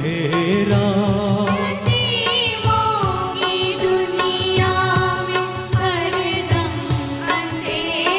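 Live performance of a Hindi film song: two women singing the melody together over orchestral accompaniment with strings, their wavering voices coming in about two seconds in.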